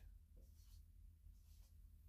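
Faint marker writing on a whiteboard: a few short, soft strokes over quiet room tone.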